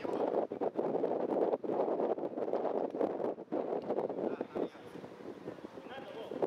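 Wind buffeting the camera's microphone, a gusty rushing that eases about four and a half seconds in.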